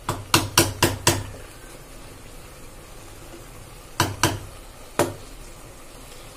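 A spatula knocking against the side of a cooking pot as biryani rice is turned and mixed: five quick knocks in the first second, then three more a few seconds later.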